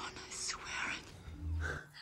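Whispered speech from a film soundtrack, followed by a short, low vocal sound about one and a half seconds in.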